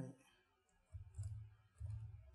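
Faint computer keyboard typing: a few separate keystroke clicks over a low rumble that sets in about halfway through.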